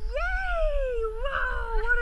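A collie-type dog whining in one long call that rises and then slowly falls in pitch, with a shorter call near the end, excited while playing with its ball toy.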